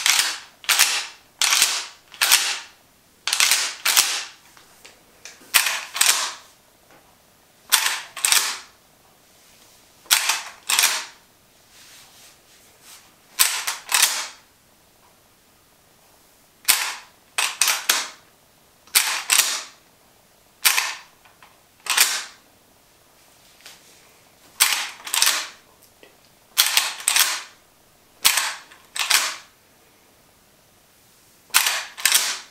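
Gun actions being worked over and over: sharp metallic clacks, mostly in quick pairs of open and close, repeated with short gaps throughout. In the later part it is the lever of a brass-framed lever-action rifle being cycled.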